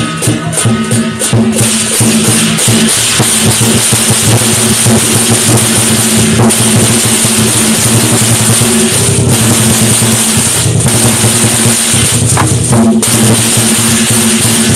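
Chinese lion-dance percussion: a big drum beaten rapidly with cymbals crashing continuously, loud throughout. The playing gets fuller and steadier about a second and a half in.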